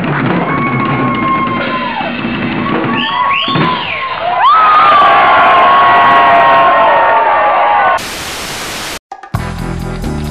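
Drum kit played live with a crowd whooping and yelling over it; about halfway through the crowd's cheering grows louder. About two seconds from the end a burst of hiss, a brief drop-out, then rock music with guitar begins.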